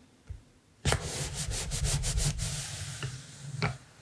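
Paper being rubbed and pressed down against a journal page to stick a round paper label in place: a dry papery scrubbing in quick strokes from about a second in, ending with a light tap near the end.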